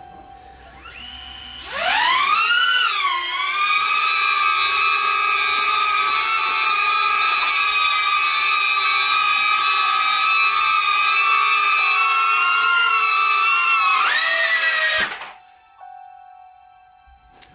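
DJI Neo mini drone's four ducted propeller motors spinning up to a loud high-pitched whine, loaded with about 120 grams of payload, close to the drone's own 130-gram weight. The pitch rises sharply at takeoff, holds steady for about eleven seconds, rises briefly near the end and cuts off suddenly as the motors stop.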